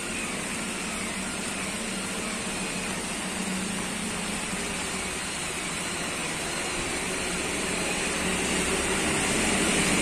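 A steady engine hum over a broad hiss, growing gradually louder over the last few seconds.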